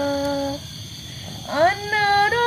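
A woman's voice singing long, drawn-out notes: a held note ends about half a second in, and after a short lull a new note swoops upward and is held near the end.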